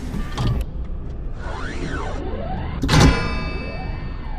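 Mechanical sound effects for an animated robot: a motor whir that rises and falls in pitch through the middle, then a loud metallic clang about three seconds in that keeps ringing, over a low droning music bed.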